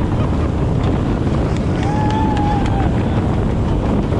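A jet boat running at speed, with rushing water and wind buffeting the microphone. About two seconds in, a passenger gives a brief held cry.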